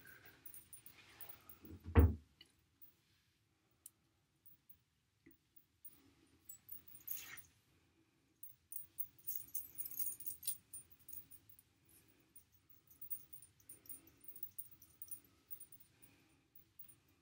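Hands working hair into a French braid: soft rustling with small metallic clicks and jingles from a chain bracelet and ring. A single low thump comes about two seconds in, and the clicking is busiest near the middle.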